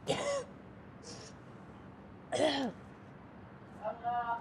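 A woman retching over a bin: two loud gagging heaves with a falling pitch, about two seconds apart, with a short breathy gasp between them.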